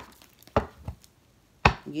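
Three sharp taps, the loudest near the end: tarot cards being handled and set down on a hard tabletop.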